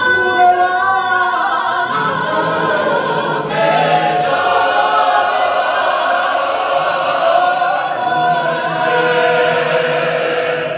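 Mixed gospel choir singing a hymn in isiZulu, many voices in harmony holding long, sustained notes.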